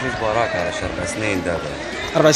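A man's voice speaking softly, quieter than the interview talk around it.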